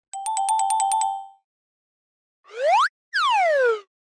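Cartoon sound effects: a rapid ringing trill for about a second, two alternating tones with quick clicks, then a whistle-like glide up and another glide down.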